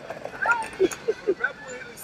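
Voices talking faintly in the background in short, broken snatches, with light street noise underneath.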